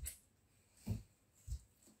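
Three soft, dull knocks: one right at the start, the loudest just under a second in, and one more about half a second later.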